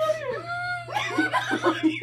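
Two women laughing hard: a drawn-out held vocal note early on, then a quick run of short laughs.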